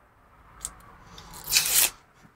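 Protective plastic film being peeled off a laser-cut acrylic part: a faint crackle about half a second in, then a short, louder rasping peel near the end.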